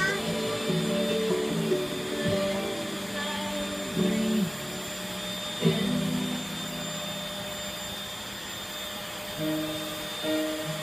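Bissell 3-in-1 corded stick vacuum running with a steady high whine as it is pushed over a rug, under background music.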